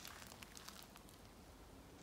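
Near silence: faint room tone with a few faint clicks.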